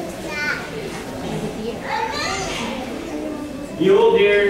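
Children's voices chattering and calling out in a large room, with a short high call early on and a longer rising cry about two seconds in.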